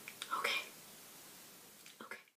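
A faint, brief murmur of a girl's voice about half a second in, with a couple of small clicks just before it.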